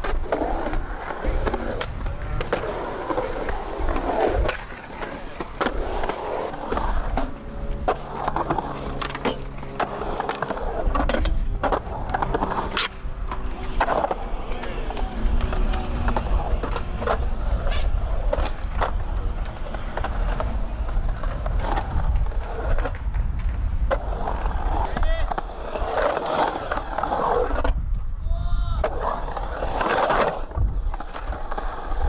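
Skateboard wheels rolling and carving around a concrete bowl with a steady low rumble, broken by sharp clacks and knocks of the board at irregular intervals.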